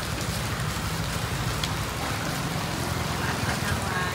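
Steady rain on a wet street mixed with the low rumble of traffic.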